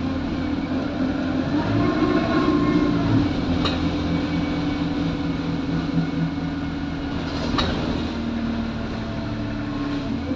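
Alexander Dennis Enviro200 single-deck bus heard from inside the passenger saloon, its engine and drivetrain running steadily as it drives, a little louder around two to three seconds in. Two sharp clicks or rattles stand out, one about a third of the way in and one about three-quarters of the way in.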